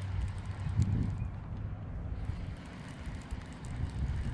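Wind rumbling on the microphone, with faint quick ticking from a baitcasting reel being wound in.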